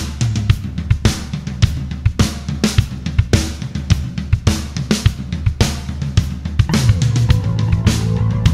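Instrumental rock intro: a full drum kit (kick, snare, hi-hat and cymbals) playing a steady driving beat over a low bass line, with a guitar coming in near the end.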